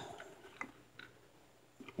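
A few faint, light clicks of handling in the first second, then near silence.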